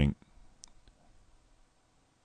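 A few faint computer mouse clicks in the first second, then a quiet background.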